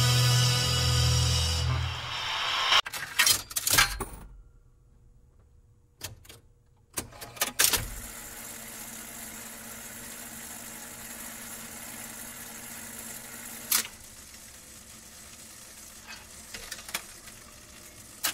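A song's music ends about two seconds in. It is followed by a jukebox's record-changing mechanism: two clusters of mechanical clicks and clunks around three to four and seven to eight seconds in, then a steady hiss with a few more isolated clicks.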